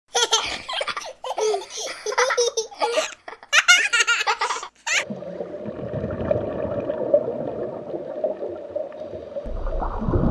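A young child laughing and giggling in short bursts for about five seconds, cutting off suddenly. Then a steady low underwater rumble with faint bubbling.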